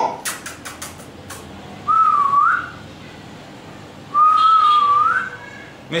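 A man whistling two short wavering phrases, each rising at its end, the second one longer. A quick run of about six clicks comes before them.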